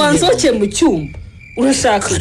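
A voice speaking in a Kinyarwanda radio drama, pausing briefly after about a second and then going on. A faint steady high tone runs underneath.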